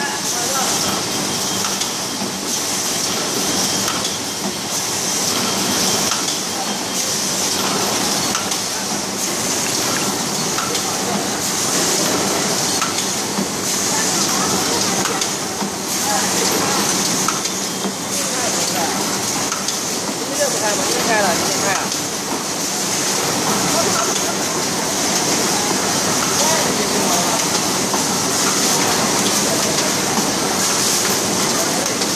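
Automatic rigid box making machines running together: a steady mechanical din with a continuous high hiss.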